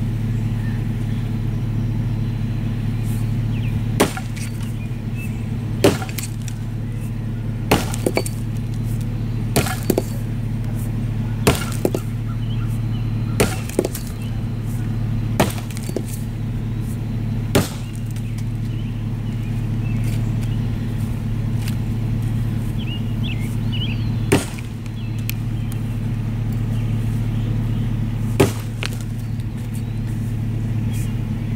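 An axe chopping into a log: about ten sharp strikes, mostly around two seconds apart, with a pause of several seconds past the middle. A steady low hum runs underneath.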